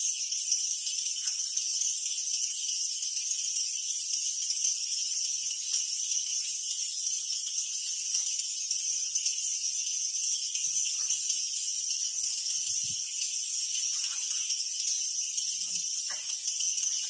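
Steady, high-pitched buzzing of an insect chorus in the forest, unbroken throughout, with a few faint soft knocks near the middle.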